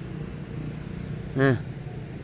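Low, steady rumble of a passing road vehicle's engine in the background, with one short spoken word about one and a half seconds in.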